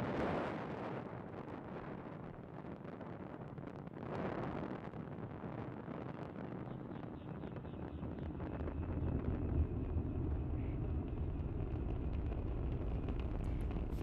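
Falcon 9 rocket's nine first-stage Merlin engines firing during the climb shortly after liftoff: a steady rushing noise. Its deep low rumble grows stronger in the second half.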